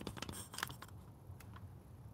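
A few faint taps and clicks of a smartphone being handled, most of them in the first second and one more about halfway through, over quiet room tone.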